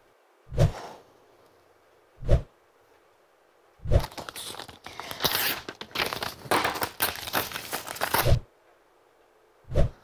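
Notebook paper being torn and crumpled for about four seconds, from a little before halfway in, with a few dull thumps before and after.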